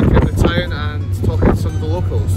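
A man's voice talking, over a steady low hum.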